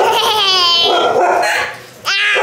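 A toddler's drawn-out, high-pitched squeal that wavers in pitch for about a second and a half, then fades near the end.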